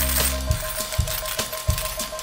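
A break in the song: the low end of the music drops out about half a second in, leaving a steady held high tone under a handful of irregular clinks of dropping coins, a casino sound effect.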